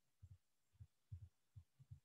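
Near silence, broken by a few faint, short, low thuds at irregular moments.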